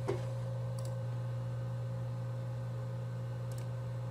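Two faint computer-mouse clicks, about a second in and near the end, as the NVR's camera view is switched to full screen, over a steady low electrical hum with a faint high tone.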